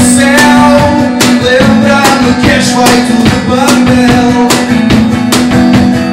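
Live acoustic band music: an acoustic guitar playing over a steady beat, with a regular run of sharp hand-percussion strikes, several a second, from a cajón.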